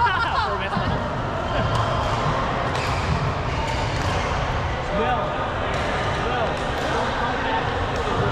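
Voices of several people talking at once in a large sports hall, with occasional short knocks.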